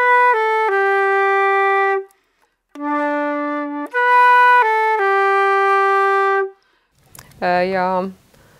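Silver concert flute playing a slow, lyrical phrase of a waltz tune: three long held notes stepping down, a short break, a single low held note, then the same three descending notes again. A woman's voice is heard briefly near the end.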